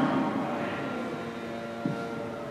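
The priest's amplified "Amén" dies away in the reverberation of a large church hall. A low, steady hum of room tone follows, with a faint brief sound near the end.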